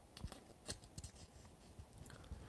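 Near silence, with a few faint, short clicks and light handling noises.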